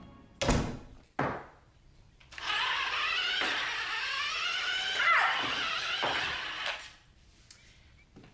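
Two thuds, as a door shuts, then a toy remote-control car's small electric motor whines for about four seconds, its pitch wavering and swooping as it is driven about.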